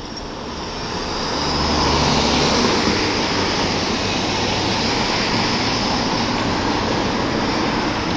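Road traffic passing close by: tyre and engine noise that swells over the first two seconds and then holds steady.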